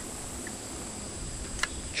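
Quiet outdoor background: a steady hiss with a faint, high, steady drone, broken by one small click near the end.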